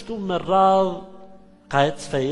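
A man's lecturing voice: one syllable held long and steady, trailing off into a brief pause, then the next word near the end.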